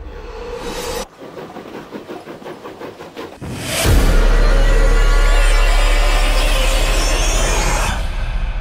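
Dramatic trailer music with a train's fast rhythmic chugging, then about four seconds in a loud explosion that carries on as a long, heavy low rumble.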